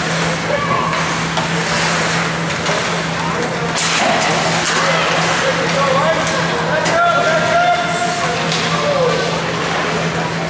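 Ice hockey rink sound: skates scraping the ice and indistinct shouts and chatter from players and spectators over a steady low hum, with a sharp knock about four seconds in.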